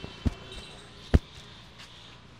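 Fist blows thumping on a man's back during a percussive massage: one thump near the start and a single louder one about a second in, as a run of quick regular blows ends.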